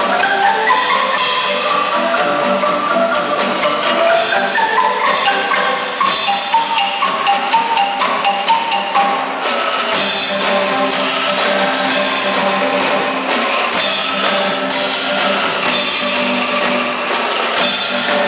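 A Filipino bamboo band playing live: bamboo xylophones in quick runs of notes up and down, with shaken bamboo angklung and a drum kit. Sharp accented beats come in the middle before the band settles into a steadier groove.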